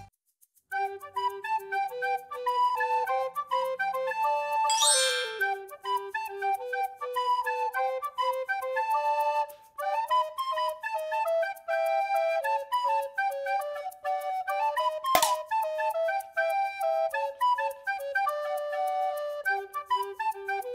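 Background music: a light flute-like melody that starts just under a second in after a brief silence, with a quick rising flourish about five seconds in. A single sharp click cuts through about fifteen seconds in.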